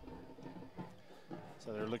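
Faint stadium background of crowd murmur with distant music holding steady notes, and a man's commentary starting near the end.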